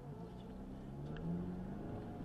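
Car engine accelerating as the car pulls away from a standstill, its pitch rising steadily and then levelling off near the end, heard from inside the cabin.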